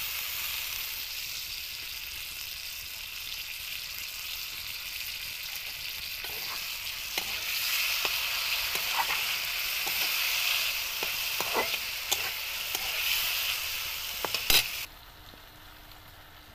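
Tomato paste sizzling in hot oil with spiced potato pieces in a wok. From about six seconds in, a spatula scrapes and knocks against the pan as the mixture is stirred. Near the end, after one loud knock, the sizzling drops off sharply.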